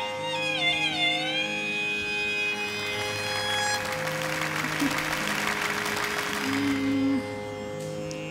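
Carnatic violin finishing an ornamented phrase with wavering, gliding notes over a steady drone about a second in. The drone then carries on under a few seconds of soft even noise.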